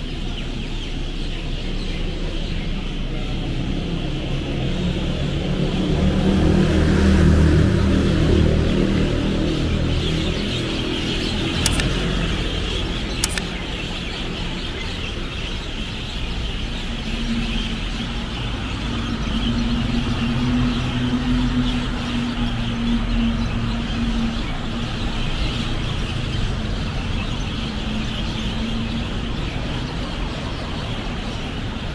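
City road traffic: buses and cars passing on a multi-lane street, with one heavy engine passing loudest about six to nine seconds in and another engine's steady hum through the second half.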